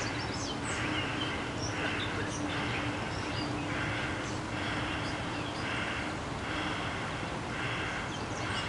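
Outdoor riverside ambience: an animal call, short and scratchy, repeats about once a second over a steady background hiss and a faint low hum.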